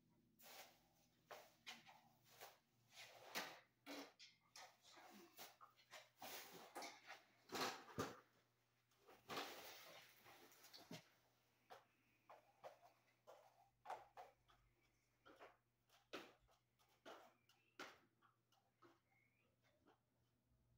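Faint, irregular clicks, knocks and rustles of someone moving about and handling things, busiest in the first half, with a longer rustle about nine seconds in.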